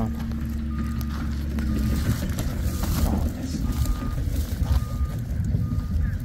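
A vehicle's reversing alarm beeping about once a second, a short single-pitched beep each time, over a steady low rumble.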